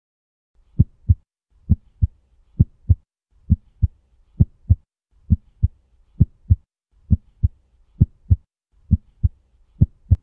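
Heartbeat sound effect: a steady lub-dub of paired low thumps, one pair a little under every second, beginning about a second in.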